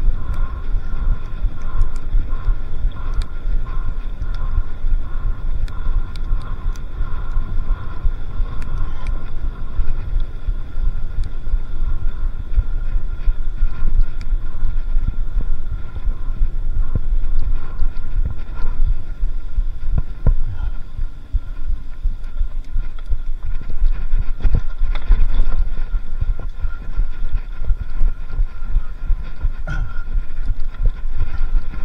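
Mountain bike rolling along a dirt forest track, heard through a handlebar-mounted camera: a steady rumble of the tyres on the ground mixed with wind on the microphone, broken by frequent sharp knocks and rattles as the bike goes over bumps.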